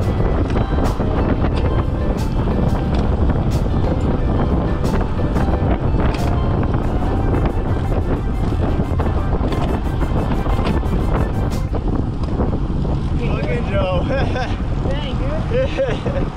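Wind buffeting an action camera's microphone on a road bike moving fast downhill, a steady loud rush with frequent brief gusts, with background music under it.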